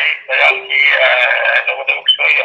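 Speech over a telephone line: one voice talking continuously in a thin, narrow-band sound with the lows and highs cut off.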